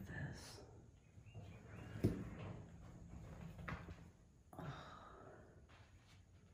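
Quiet footsteps on a floor littered with flaked paint and plaster, with one sharp knock about two seconds in.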